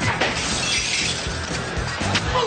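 A sudden crash with something shattering, its high splintering noise trailing off over about a second, over music.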